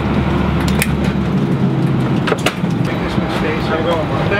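Airliner cabin noise: a steady low hum whose deepest part drops away about a second in. Over it come a few sharp clicks and knocks and faint voices of passengers.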